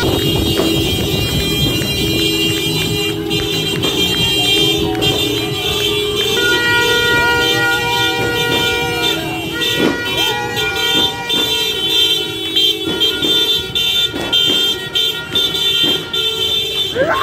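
Street din of New Year's celebrations: several horns blown on long, steady, overlapping tones, with sharp cracks scattered through, over music and voices.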